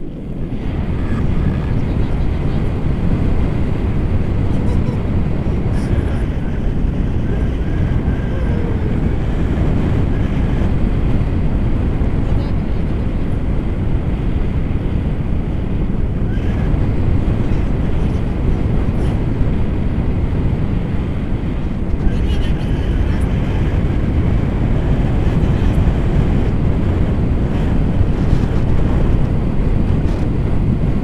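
Wind rushing over the camera microphone as a tandem paraglider flies, a loud, steady low rumble of buffeting air.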